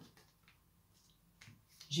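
Tarot cards handled on a table: a couple of faint short card clicks as cards are drawn and placed, with a word of speech starting at the very end.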